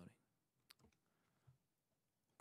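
Near silence with a faint sharp click about two-thirds of a second in and a faint low knock around a second and a half.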